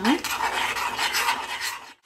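A spoon stirring and scraping around a stainless steel saucepan of thick melted chocolate and peanut butter: a steady rasping scrape that dies away near the end.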